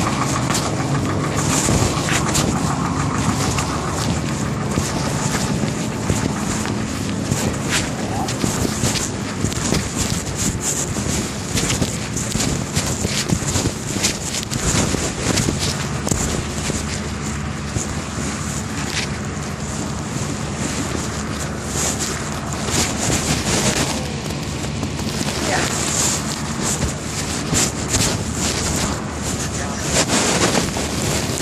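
A concrete truck's diesel engine running steadily, heard under heavy rubbing, handling and wind noise on a covered microphone.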